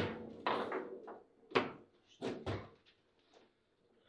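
Table football in play: a series of sharp, separate knocks as the ball is struck by the figures on the rods and hits the table, about six in the first two and a half seconds, then a short lull.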